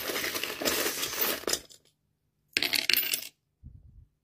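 Coins and small metal charms jingling as a hand rummages through a pouch full of them. After a short pause, a few coins and charms clatter briefly as they are cast onto a wooden teakwood coaster, followed by a couple of soft knocks near the end.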